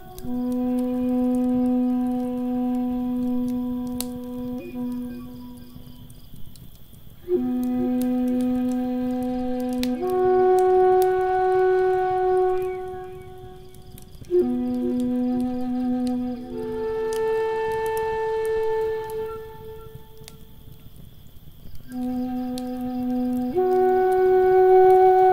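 Native American flute playing slow phrases of long held notes with short pauses between them. A wood fire crackles underneath.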